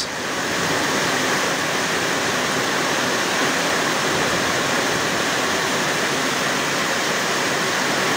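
Heavy rain pouring down onto wet pavement and puddles, a steady even hiss.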